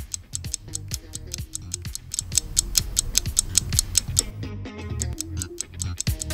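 Countdown-timer music: a fast, steady ticking, about five ticks a second, over low bass notes.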